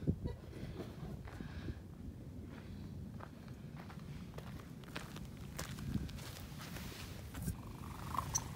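Footsteps on desert ground: scattered light ticks and scuffs over a low, steady rumble.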